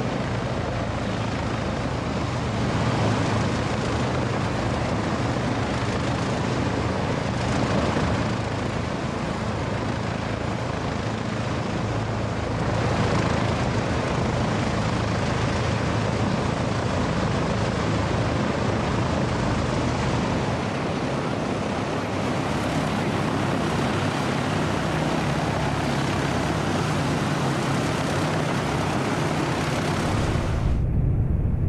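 Several B-29 Superfortress 18-cylinder air-cooled radial piston engines (Wright R-3350s) running with their propellers turning. It is a loud, steady, deep drone that swells slightly a few times.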